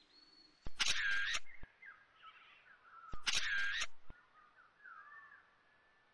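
Two loud, harsh bird calls about two and a half seconds apart, with fainter bird chirps between and after them.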